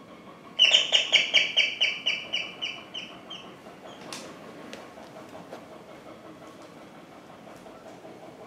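A bird calling in a rapid series of shrill notes, about five a second, that slow and fade away over about three seconds, followed by a single faint click.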